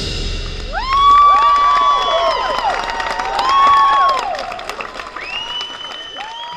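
A marching band's final held chord cuts off at the start and rings briefly in the gym. About a second in, the crowd starts cheering and clapping, with long, high whoops that rise, hold and fall away, and the noise thins out toward the end.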